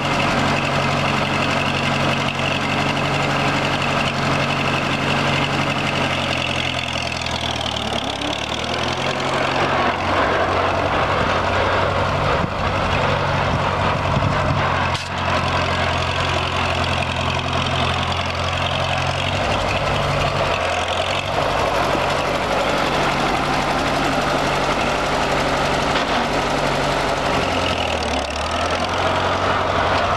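Massey-Harris 333 row-crop tractor engine running steadily, its note shifting a few times as the tractor drives off across the field and back.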